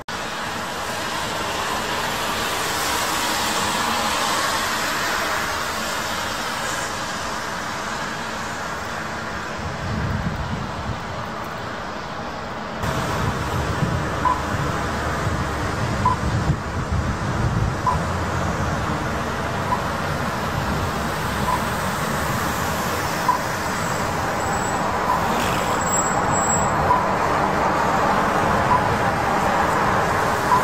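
Street traffic on wet city roads: the steady hiss of tyres on wet tarmac and passing car engines, growing louder and deeper about halfway, with a bus passing close near the end. From about halfway, a faint short tick repeats roughly every two seconds.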